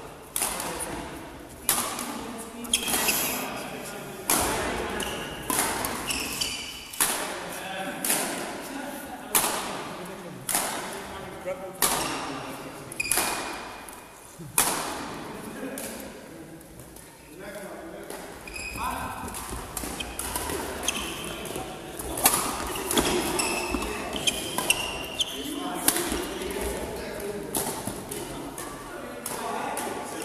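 Badminton rackets striking a shuttlecock in quick rallies, sharp cracks roughly every half second to a second, with short squeaks of sports shoes on the hall floor. The hits echo in the large sports hall and thin out for a couple of seconds past the middle.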